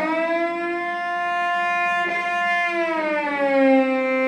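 Cello bowed on the A string, shifting from B in first position to E in fourth position with a slow glissando. The note slides up at the start, is held, and slides back down to B near the end.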